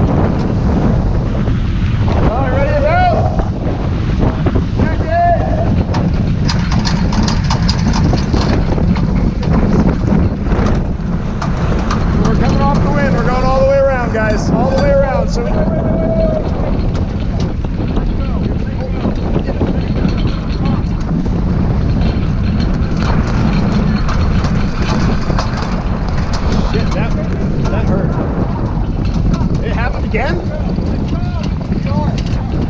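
Wind buffeting the microphone and water rushing past the hull of a heeled sailboat under way, a steady loud noise throughout. A few brief calls from the crew cut through it, around two, five and thirteen to sixteen seconds in.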